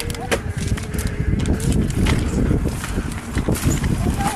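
Bike ridden fast over a rough dirt trail: wind rushing over the microphone, with the continuous rattle and quick knocks of the bike and tyres over bumps.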